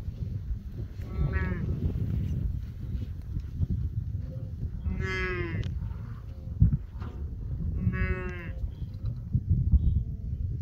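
Wildebeest in a large herd giving three loud nasal grunting calls, each about half a second long, about a second in, midway and near the end. A steady low rumble runs underneath.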